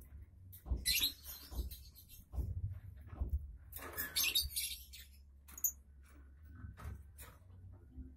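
Newly hatched nestling chicks giving short, scratchy, high-pitched begging calls, about a dozen at irregular intervals.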